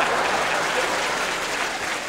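Studio audience applauding after a comedy bit, a dense steady clapping that eases off slightly toward the end.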